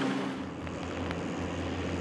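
Schlüter tractor's diesel engine running steadily as a low drone while pulling a soil-tillage implement.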